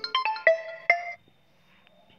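Mobile phone ringtone for an incoming call: a quick melody of bright chiming notes that cuts off suddenly a little over a second in, when the call is ended.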